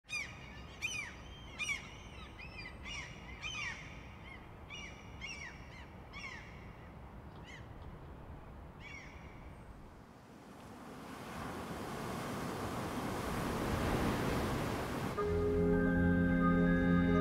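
Birds calling repeatedly, short arched cries, over a low rumble for the first several seconds. Then a rush of noise swells steadily louder, and about a second before the end sustained organ-like music chords begin.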